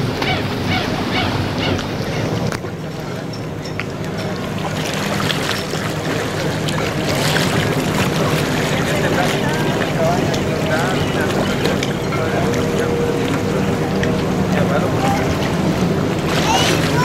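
A boat engine running with a steady low hum, with water washing and wind noise, and indistinct voices in the background.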